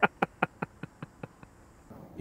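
A person laughing: a run of short "ha" pulses, about five a second, that fades out over about a second and a half.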